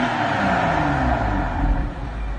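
BMW engine running through an ARMYTRIX valved aftermarket exhaust, its note falling away after a rev and settling into a steady idle.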